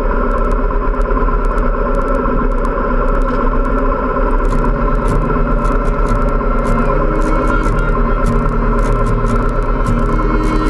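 Motorcycles running in a slow group ride, heard as a steady engine and wind noise on the camera microphone. About halfway through, music with a stepping bass line comes in over it.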